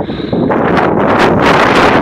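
Wind blowing across the camera's microphone, a loud rushing noise that grows stronger about half a second in.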